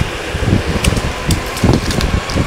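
Wind buffeting the microphone and the rolling roar of electric skateboard wheels on pavement while riding at speed, with a few light ticks.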